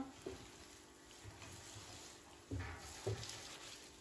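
Hot oil sizzling faintly in a frying pan as a layer of fried kataifi dough is lifted out of it with tongs, with a couple of faint soft knocks late on.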